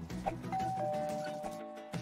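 Background music with a two-note ding-dong chime over it: a higher tone about half a second in, then a lower tone a moment later, both ringing on until near the end.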